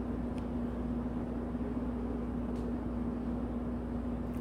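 A steady low hum with one constant tone over a bed of low noise, unchanging throughout.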